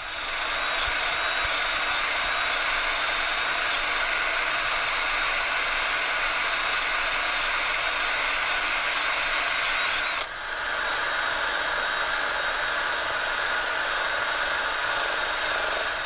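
Cordless drill spinning a rubber decal-remover eraser wheel against wheel-weight adhesive on an alloy rim: a steady motor whine with rubbing. It eases off for a moment about ten seconds in, then runs on.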